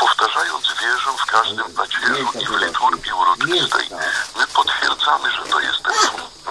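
Continuous talk from a radio broadcast.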